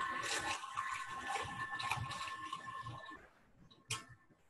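Water running and splashing as rubber stamps are rinsed of acrylic paint, stopping about three seconds in; a single sharp click near the end.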